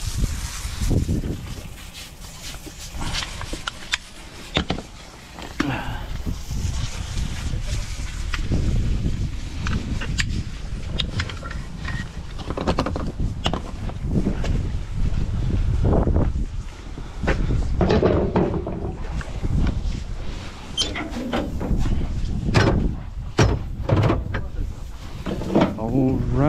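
Steel concrete-pump hose clamps being picked up and clanking against each other, heard as scattered, irregular knocks over a low rumble.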